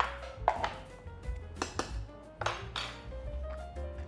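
Metal kitchen utensils knocking and scraping in a pot of mashed potatoes a few times, over light background music.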